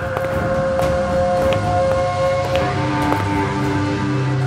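Eerie background score of long held tones over a low drone, moving to new, lower notes about two and a half seconds in, with faint scattered ticks.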